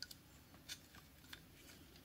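Near silence with a few faint clicks, about a second apart: magnetic posts of a board holder being slid and set against the edge of a small circuit board.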